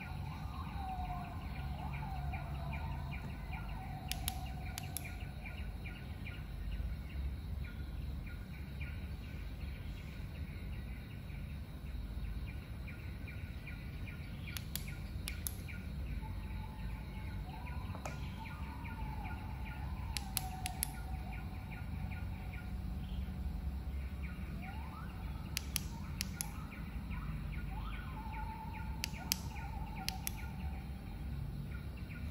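Clicks from a flashlight's tail switch, in pairs about half a second apart, heard about five times as the light with a traffic wand fitted is switched on and off. Birds chirp and a low hum runs underneath.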